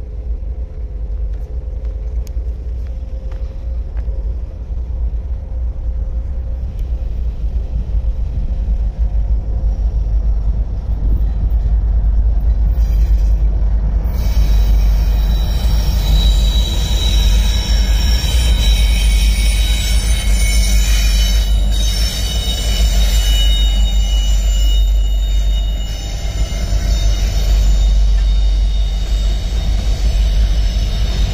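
Freight cars of a long bulk train rolling past slowly with a steady heavy rumble of wheels on rail. About halfway through, high steady wheel squeal joins in and the sound grows louder.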